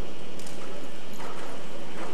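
Hoofbeats of Lipizzaner stallions moving on sand arena footing.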